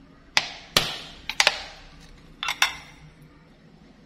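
A metal spoon clinking against a glass mixing bowl while sesame oil is added to a marinade: about seven sharp clinks, each ringing briefly, in three small groups.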